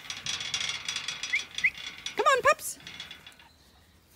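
Old iron gate swinging on its hinges: a rapid, ratcheting metal creak lasting about three and a half seconds, then stopping.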